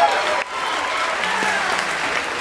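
Audience applauding in a large hall, briefly dipping about half a second in.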